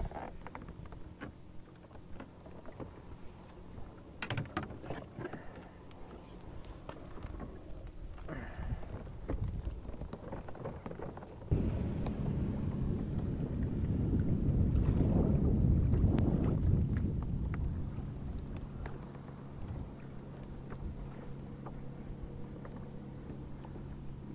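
A motorboat running past a kayak: a steady low engine hum, then from about halfway in a loud rushing engine-and-water noise that swells to a peak and eases away. A few light knocks come in the first half.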